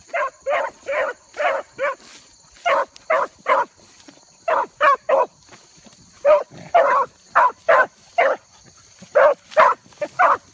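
Dogs barking on the chase of a rabbit, short barks in runs of three to five at about two a second, with short pauses between the runs. The barking is the sign that they are on the rabbit's trail.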